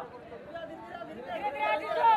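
Men's voices calling out over a football match, quieter at first, then building to a loud, held shout near the end.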